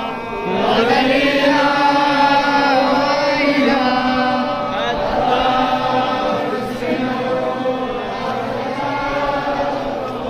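A single voice chanting a slow, melodic religious-style recitation in long, held notes that glide between pitches.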